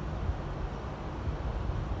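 Low, uneven rumble with no clear pitch, with no speech over it.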